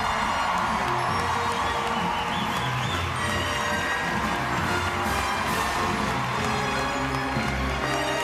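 Theatre audience cheering and applauding under loud music. The crowd noise is fullest in the first couple of seconds, then carries on steadily beneath the music.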